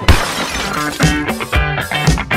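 Station ident jingle: a sudden crash-like hit at the start, then upbeat rock music with drums and guitar.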